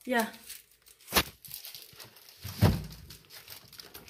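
Plastic-wrapped food being moved around on refrigerator shelves: crinkling plastic, a sharp knock about a second in and a heavier thump past the middle as things are set down.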